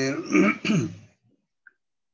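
A man's voice finishing a word, then a short two-part throat clearing about half a second in, followed by about a second of near silence.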